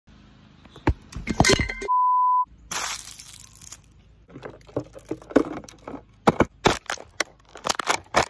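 Plastic water bottle crackling and crunching under a sneaker as it is stepped on and crushed, a string of sharp cracks that comes thickest in the second half. A single steady beep sounds for about half a second about two seconds in.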